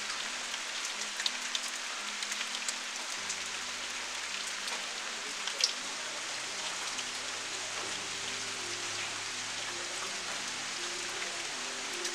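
Steady rain falling: an even hiss with scattered drips of drops and one louder drip about halfway through.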